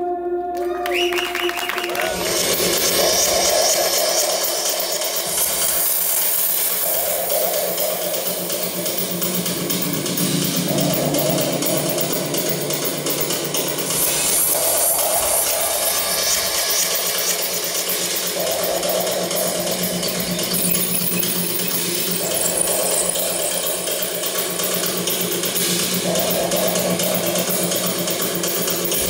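Live industrial rock played on synthesizer and samples: a held tone rises in a sweep about a second in, then gives way to a dense, hissy electronic texture with a phrase repeating roughly every four seconds.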